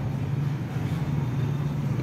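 Steady low-pitched background hum under faint noise, holding level with no distinct strokes or knocks.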